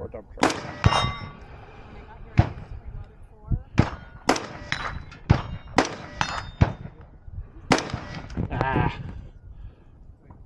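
About a dozen gunshots fired at an uneven pace, several followed by the ring of struck steel targets.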